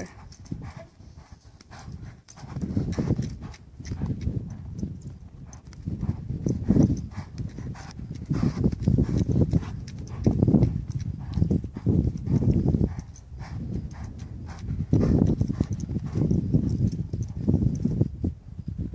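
A young cutting-horse colt's hooves thudding in deep, loose arena sand as it lopes and trots around the handler. The dull hoofbeats swell and fade every second or two as the horse circles nearer and farther.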